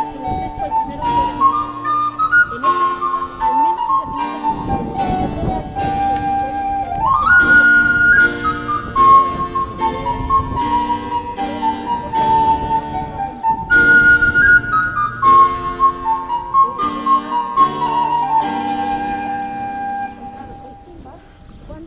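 Background music: a melody line over held chords with a steady beat, sliding up in pitch about seven seconds in.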